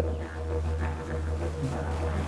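Background music: a steady low drone held under a pause in the talk.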